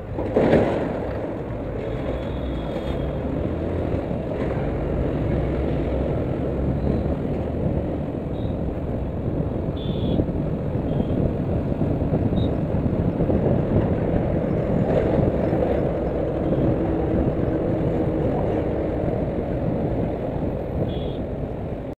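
Riding noise of a Yamaha FZS V3 (149 cc single-cylinder) motorcycle on the move: steady engine and wind rush heard from the rider's seat, a low even rumble. A sharp knock about half a second in, and a few short high-pitched beeps scattered through.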